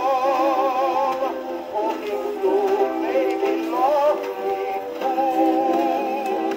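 A 1925 Grey Gull 78 rpm record playing on an acoustic phonograph through its soundbox and tonearm. The melody wavers with vibrato, and the sound is thin with almost no bass.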